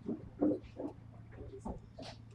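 A few faint, short breathy vocal sounds from a person, like soft breaths or sniffs, over a low steady hum.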